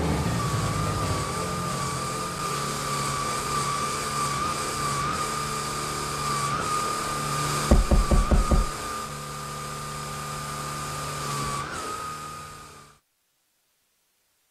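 Vacuum cleaner motor running with a steady high whine over a low hum. Just past the middle comes a quick run of about half a dozen knocks as the nozzle bangs against something, and the motor cuts off abruptly about a second before the end.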